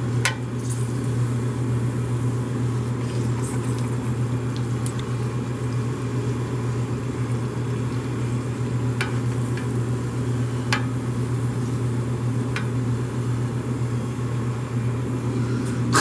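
Battered Oreo frying in a pan of hot oil: a steady sizzle with a few sharp pops, over a constant low hum.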